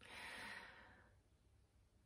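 A woman's faint, soft exhale through the mouth, lasting about a second and fading away.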